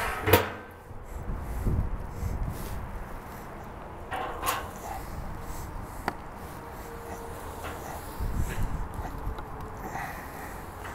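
Wind rumbling in gusts on the microphone, with one sharp knock just after the start and a few light clicks later as glazed ribs are lifted off a metal sheet pan and laid on a drum smoker's grate.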